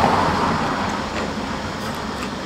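Steady rushing background noise, loudest at the start and slowly fading.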